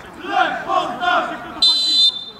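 Men shouting on a football pitch, then a short, shrill blast of a referee's whistle near the end.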